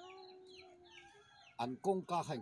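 A rooster crowing once: the call rises and then holds one steady note for about a second. Small birds chirp high above it, and voices come in near the end.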